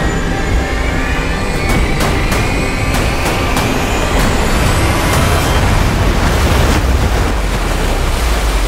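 Loud, steady roar of a huge breaking ocean wave, heavy in the low rumble, under dramatic film music with a tone that rises slowly over the first few seconds and a few sharp hits.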